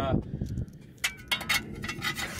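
A few light metallic clicks and clinks of a hand wrench on engine-bay bolts, starting about a second in.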